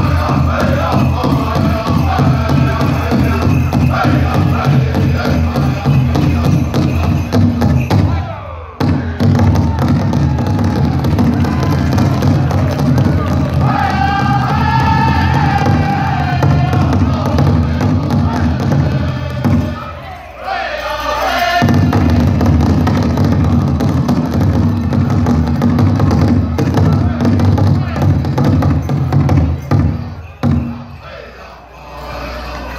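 Powwow drum group playing a men's fancy dance song: a big drum beaten in a steady pulse under high, wavering group singing. The drum breaks off briefly twice, about 8 seconds in and about 20 seconds in.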